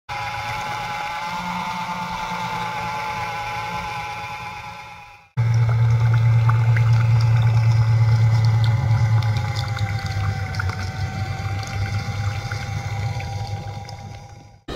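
Small DC motor of a homemade belt-driven water pump running with a steady whine and a low hum, while the outlet pipe pours a stream of water into a puddle. The sound breaks off about five seconds in, comes back louder, and fades out near the end.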